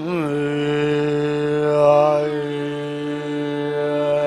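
A male Indian classical vocalist holding one long, steady sung note in an alap of raga Bihag. He slides into it with a wavering ornament at the start, over a sustained drone.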